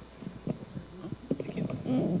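Soft irregular knocks and thumps of handheld microphones being picked up and carried about, with low voices near the end.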